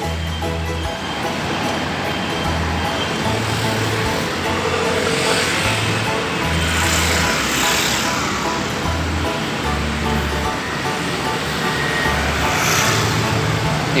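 Music with a low, stepping bass line over steady street traffic noise, with vehicles passing close by several times, most clearly about five to eight seconds in and again near the end.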